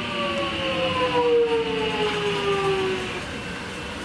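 Metro Trains Melbourne X'trapolis electric train passing, its traction motors giving a whine of several tones that falls steadily in pitch over a rumble of wheels on rails. The whine is loudest in the middle and fades out about three seconds in.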